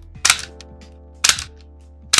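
Two gunshot sound effects for a handgun, each a sharp crack with a short tail, about a second apart, over steady background music.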